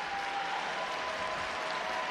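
Arena crowd applauding, an even, steady wash of noise with a faint held tone running through it.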